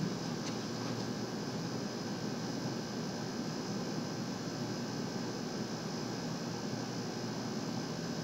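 Steady background hiss, even throughout, with no distinct events.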